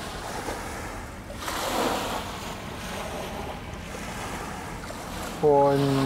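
Small waves washing onto the river beach at the water's edge, with wind on the microphone; one wave swells up louder about a second and a half in.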